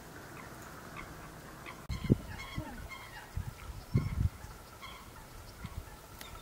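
Bird calls: a few short, low honking calls in irregular bursts starting about two seconds in, over faint higher chirps.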